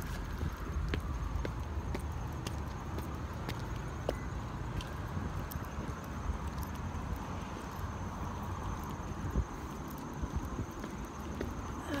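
Footsteps of a person walking, heard as scattered light knocks over a steady low rumble.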